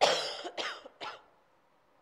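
A person coughing three times in quick succession, the first cough the loudest.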